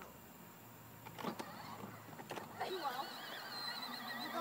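Electric drive motors of a children's battery-powered ride-on buggy whirring faintly as it drives over grass, with a few knocks as it bumps along. A high, wavering child's voice comes in for the last second or so.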